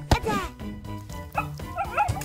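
A single thump of a soccer ball being kicked just after the start, then a cartoon puppy giving several short barks, over background music.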